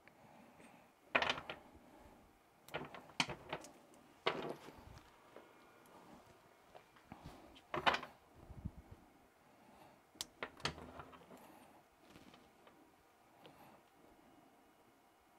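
Handling noise from a bundle of LED pixel strings on a wooden workbench: about eight short, irregular clicks, knocks and rustles as one string set is unplugged from its connector and another is plugged in.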